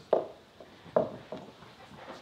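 Three short knocks in about a second and a half, the first the loudest, with quiet room tone between them.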